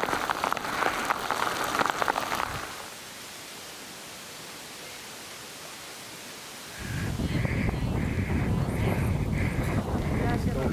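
Rain on umbrellas: a dense crackle of drops at first, then a quieter, steady hiss. About seven seconds in, a loud low rumble sets in, with a run of short, evenly spaced sounds over it.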